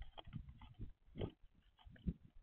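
Faint, irregular scuffs and knocks of a Eurasian collared dove moving on the feeder right by the microphone, its feet shifting on the metal rail. The loudest knock comes about a second in.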